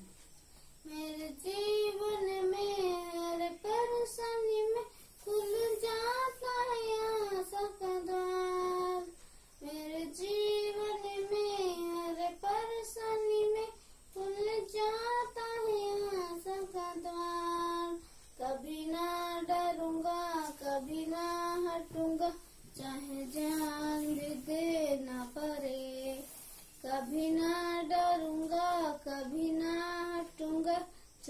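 A boy singing solo without accompaniment, in melodic phrases a few seconds long with short breaks for breath between them.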